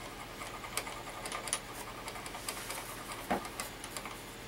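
Faint, irregular light ticks and clicks of a metal stylus tool tapping in the small wax cups of a crayon-wax palette, over a steady low hiss.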